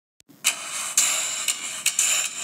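Intro music: after a brief silence, sharp beats land about every half second over a steady, bright high-pitched sound.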